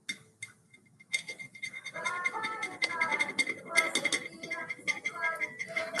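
Razor blade scraping paint off a glass bottle: a fast, irregular run of small scratchy clicks starting about a second in. The paint is sticky and does not come away cleanly.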